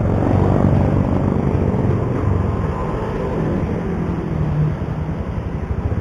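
Yamaha Byson motorcycle's single-cylinder engine idling steadily, its low hum shifting slightly in pitch now and then.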